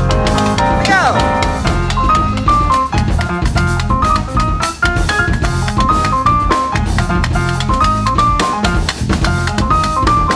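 A live jazz band playing an up-tempo groove. A grand piano plays a repeated melody figure over a busy drum kit, bass guitar and hand percussion.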